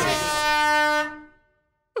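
Handheld canned air horn blown once: a single steady, shrill blast lasting about a second before it fades away.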